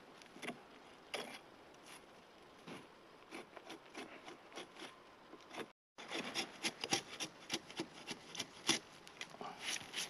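A fixed-blade TFK T8 knife scraping and shaving bark off a fallen log in short, irregular strokes. After a brief cut-out a little past halfway, the strokes come quicker and louder.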